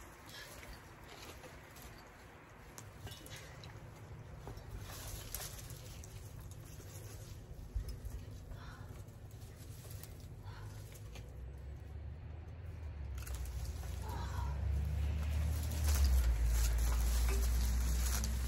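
Faint rustling and small crackles of dry vines, brush and soil as an old grapevine is pulled up by its roots. A low rumble on the microphone builds over the second half and is loudest near the end.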